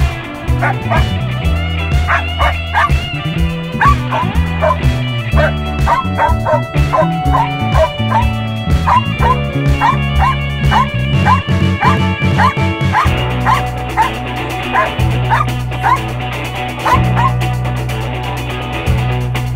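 Belgian Malinois search-and-rescue dog barking repeatedly, about two to three barks a second: the sustained bark alert a rubble-search dog gives at a found person. Background guitar music plays under the barking.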